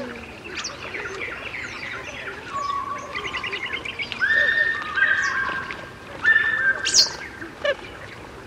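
Birdsong from several birds: quick chirps throughout, a rapid trill about three seconds in, then a run of long, level whistled notes, and a sharp high call near the end.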